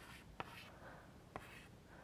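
Faint chalk writing on a blackboard: three short taps as digits are written.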